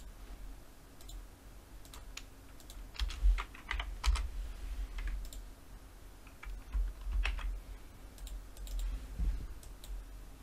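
Computer keyboard keys and mouse buttons clicking in irregular clusters, some clicks with a dull low thud.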